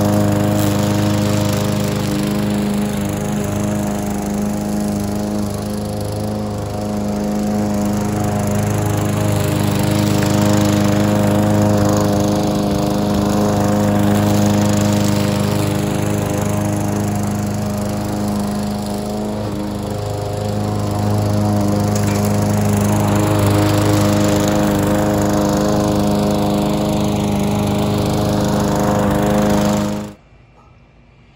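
Gasoline walk-behind lawn mower running steadily as it is pushed over thin, patchy grass, its engine note growing louder and softer every several seconds as it moves nearer and farther. The sound cuts off suddenly at the end.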